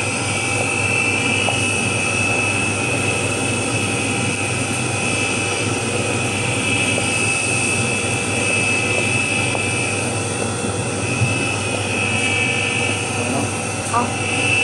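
Stainless-steel colloid mill running steadily while grinding tiger nuts into milk, with the slurry pouring from its return pipe back into the hopper. The sound is a constant high whine over a low hum.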